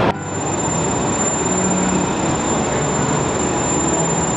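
Rice mill machinery running: a steady, dense mechanical rumble with a thin, constant high whine over it.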